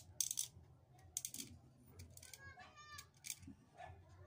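Faint, short scrapes and clicks of a kitchen knife cutting into a plastic ballpen barrel, several times over, with a brief high squeak a little past the middle.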